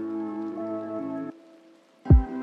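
Rap/lofi hip-hop instrumental beat: sustained chords over bass that cut off suddenly about a second and a half in, leaving a brief near-silent gap as a break before the drop.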